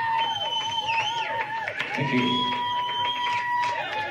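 Live rock band playing: long held melody notes, each lasting a second or two with a slight waver, over drums and cymbal hits.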